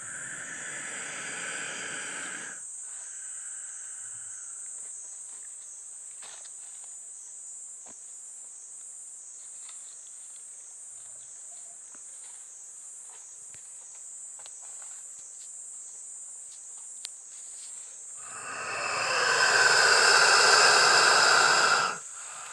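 Steady high-pitched insect buzzing throughout, with faint scattered clicks and rustles. A much louder rushing noise swells up in the last few seconds and cuts off suddenly at the end.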